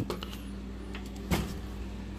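Wooden room door being pushed open, with faint clicks and one brief knock about halfway through, over a steady low hum.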